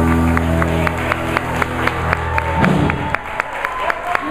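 A live blues band's closing chord on electric guitars and bass, held and then stopping about two and a half seconds in with a low thud. Audience clapping runs through it, in steady claps about four a second, and goes on after the band stops.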